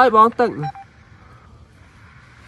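A voice speaking for about the first half second, then a brief steady tone, then only a faint hiss.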